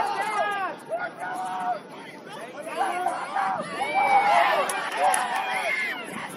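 Raised voices of rugby players and sideline spectators shouting and calling out, several at once and overlapping, with a brief lull about two seconds in.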